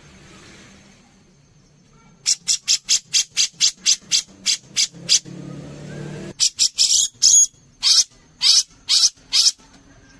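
Grey-cheeked bulbul (cucak jenggot) calling. After about two seconds it gives a fast series of short, sharp, high notes, about four a second, then a run of louder, longer notes, some falling in pitch. A low rumbling sound comes in briefly about halfway.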